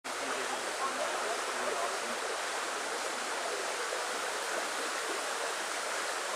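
Steady rushing of running water, an even hiss without a break.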